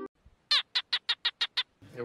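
A bird's rapid series of seven short chirps, each falling in pitch, about six a second, starting about half a second in.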